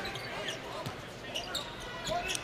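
Quiet arena game sound: a basketball bouncing on the hardwood court over a low crowd hum, with faint, indistinct voices.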